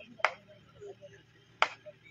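Two sharp clicks about a second and a half apart, over faint distant voices.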